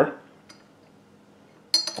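Mostly quiet while olive oil is poured onto a tablespoon over a glass jar, with a faint tick about half a second in. Near the end a metal spoon strikes the glass jar once with a short ringing clink.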